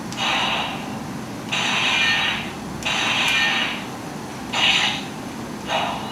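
Electronic sound effects from a battery-powered toy sword's small built-in speaker, set off one after another by its buttons: about five short slashing effects, each a second or less.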